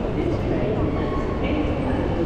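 Busy railway station concourse ambience: the chatter of many voices in a crowd over a steady low rumble.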